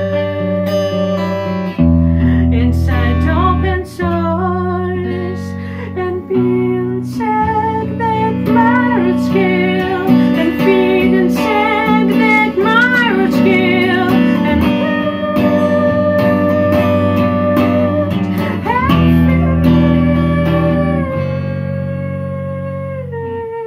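Electric guitar playing sustained, ringing chords and picked notes, with a woman singing a sliding melody over it from about two seconds in; her voice stops a few seconds before the end and the guitar carries on alone.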